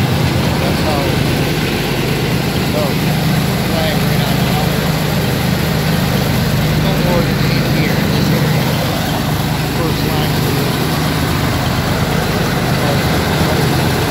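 Toro ProCore 648 greens aerifier running while aerifying a green: its engine and tine drive are loud and steady, with a fast, even pulsing.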